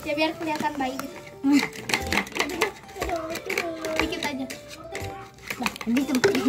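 Children talking over background music, with a metal spoon clicking and scraping against a plastic tub as a slime mixture is stirred.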